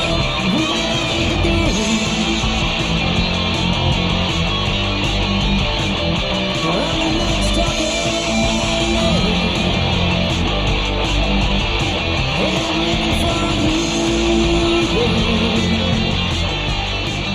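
1980s-style hard rock band playing: electric guitar over bass and drums, steady and loud, from a raw four-track tape recording with nothing added.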